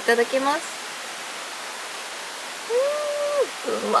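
A woman's short hummed "mmm" of enjoyment while tasting food, rising, held for about half a second and falling away, about three seconds in, over a steady background hiss. A few words at the start and end.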